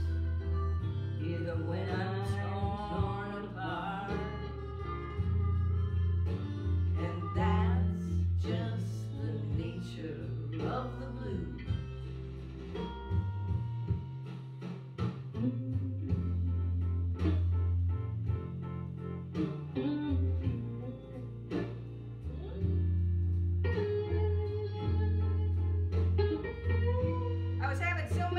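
Blues song playing from a studio recording, with a guitar solo over a steady bass line.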